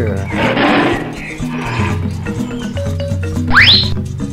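A tiger roaring for about two seconds over bouncy background music. Near the end comes a quick rising whistle.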